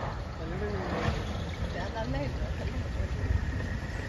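Wind buffeting the microphone as a low rumble, with people's voices talking in the background.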